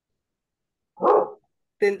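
A single short dog bark, heard through a video-call microphone.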